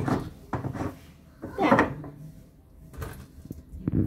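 Plastic screw cap of a cooking-oil jerrycan being forced round anticlockwise with a spoon as a lever, giving a few knocks and clicks and one louder creaking scrape a little before halfway, as the cap works loose.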